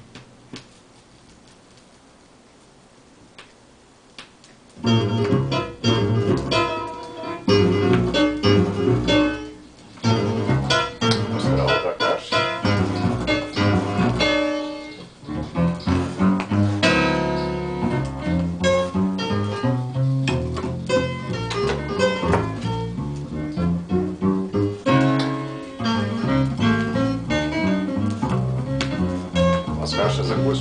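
Faint surface hiss with a couple of soft ticks, then, about five seconds in, music suddenly starts playing from a vinyl record on a Gradiente DS40 belt-drive turntable, heard through hi-fi loudspeakers in the room.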